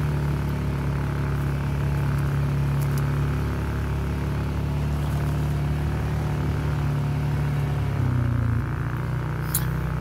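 ATV engine running steadily at low trail speed, with a brief change in its engine note about eight seconds in.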